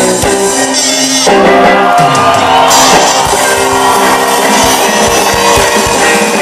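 Live rock band playing: electric guitars, bass and drums, the sound filling out and getting louder about a second in.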